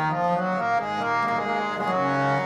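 Nagi harmonium being played, its reeds sounding a melody of steady notes that change several times a second over a held lower note.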